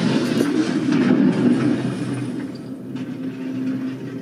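Television episode soundtrack playing: a dense, rumbling mix of dramatic sound effects and score that thins out about halfway, leaving a held low note.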